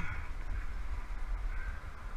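A bird calling over a steady low wind rumble on the microphone.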